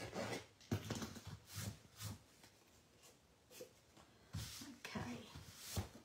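Edges of a paper card panel being scraped to distress them: a series of short, irregular scraping strokes in clusters.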